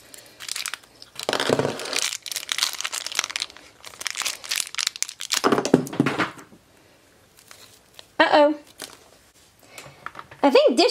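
A small foil blind bag crinkling and tearing as it is crumpled and pulled open by hand, a dense run of crackles over the first six seconds, then quieter. A short burst of voice comes about eight seconds in.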